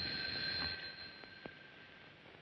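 Telephone bell ringing, its ring dying away about a second and a half in, followed by a few faint clicks.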